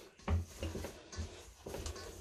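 Hands squishing soft cookie dough together in a stainless steel mixing bowl: a few soft, irregular squishes and light knocks.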